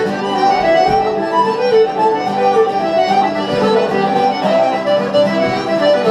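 Live Irish traditional dance tune played on accordion and fiddle, a quick continuous run of melody notes over a steady low drone.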